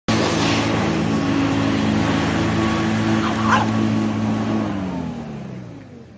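Corded electric hover lawnmower motor running with a steady hum. Near the end its pitch falls and the sound fades as the motor runs down.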